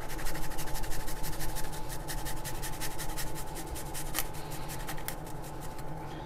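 Garlic being grated on a small handheld metal grater: rapid rasping strokes, several a second, stronger in the first couple of seconds and then lighter.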